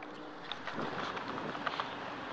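Low, steady street noise outdoors with a few faint light ticks scattered through it.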